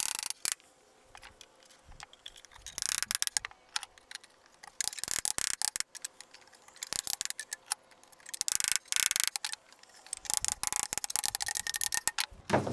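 A small hammer tapping a wooden block to drive thin wooden divider strips down into the slots of a display case. The taps come in several runs of quick, light strikes with short pauses between.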